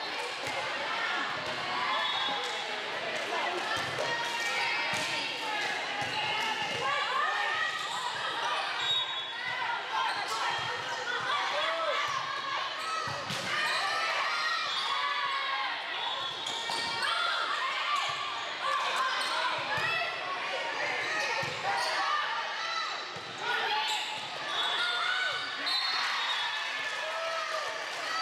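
Indoor volleyball rally: the ball struck again and again in serves, passes and hits, over a steady mix of players calling out and spectators talking, in a large gym.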